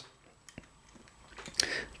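Quiet handling of the Manurhin MR73's steel 9mm cylinder: a single light click about a quarter of the way in, a couple of tiny ticks, then soft rustling near the end.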